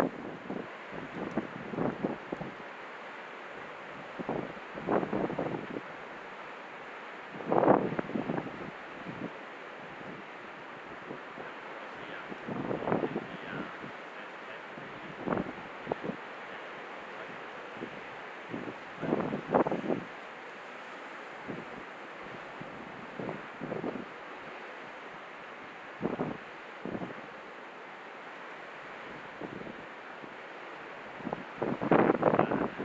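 Strong wind buffeting the microphone in irregular gusts every few seconds, over a steady hiss of wind and surf on a rough sea.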